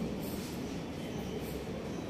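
Steady low background rumble with a faint hum, heard through the lapel microphone in a pause between speech.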